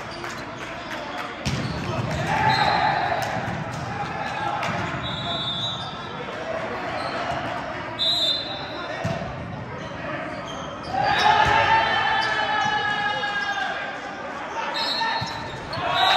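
Volleyball game on an indoor gym court: sneakers squeaking sharply on the floor several times, a few thuds of the ball, and players' voices shouting over the play, loudest near the end.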